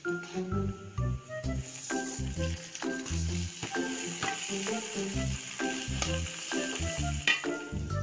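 Background music with a steady beat over hot oil sizzling in a pot as raw rice is stirred into it to fry.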